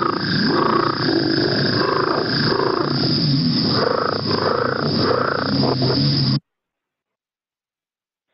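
A recorded call of the Rio Grande leopard frog played back: a run of low growling, purr-like notes repeating about every half second over a steady high-pitched background. The recording cuts off suddenly about six seconds in, followed by dead silence.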